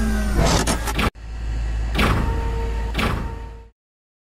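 Swooshing sound effects over a steady low rumble, swelling three times about a second apart, then cutting off abruptly near the end.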